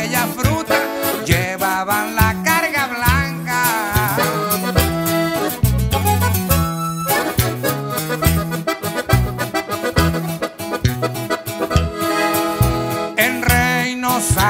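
Instrumental break of a Mexican regional corrido played live: a button accordion carries the melody over a steady line of low bass notes, with no singing.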